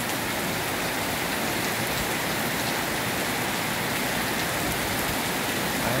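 Heavy rain falling steadily on a waterlogged road, an even, unbroken wash of rain noise.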